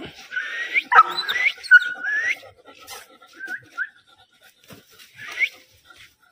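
Animal cries: a string of short raspy calls, several ending in a rising whine, thickest in the first two seconds and again near the end.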